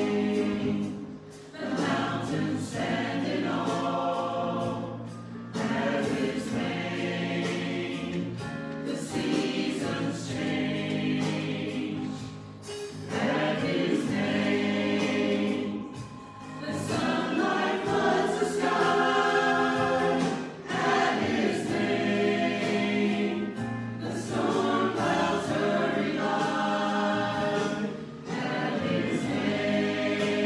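Mixed church choir of men and women singing together, phrase after phrase, with short breaks between phrases every few seconds.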